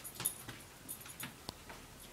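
A dog walking across a hard floor into a wire crate: faint, scattered ticks and taps of its claws, with one sharper tick about one and a half seconds in.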